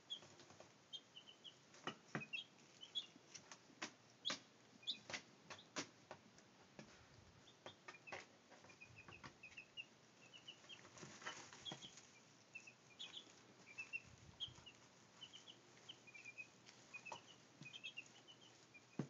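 Week-old Brahma chicks peeping softly, short high chirps scattered throughout, with frequent sharp taps and rustles from the chicks pecking and scratching in grass-clipping bedding.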